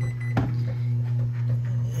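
Zojirushi bread machine kneading dough, its motor giving a steady low hum, with a single sharp click about half a second in.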